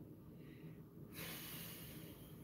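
A man breathing out through his nose close to the microphone: a short hiss about a second in, after a fainter breath just before it.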